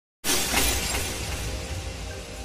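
Glass-shattering sound effect: a sudden crash of breaking glass about a quarter second in, slowly fading over a low rumble, with music underneath.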